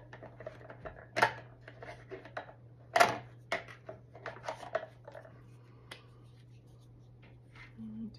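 Clear plastic cash-envelope pockets in a ring binder being flipped through and handled. The result is a run of crinkles and sharp clicks, loudest about three seconds in, that thins out after about five seconds.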